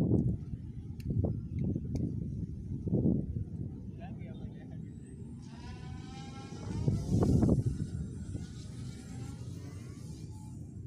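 Small electric motor and propeller of a converted foam RC glider whining, wavering in pitch, for about four seconds from the middle on, as it is run up for flight. Low gusts of wind buffet the microphone.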